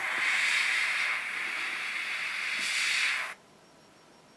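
Gravity-feed airbrush spraying paint: a steady hiss of air through the nozzle that cuts off suddenly a little over three seconds in.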